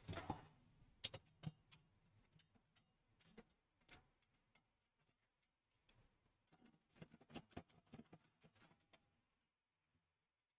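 Faint, scattered clicks and ticks of a screwdriver and screws against a steel desktop computer chassis, in short clusters about a second in and again about seven seconds in, with near silence between.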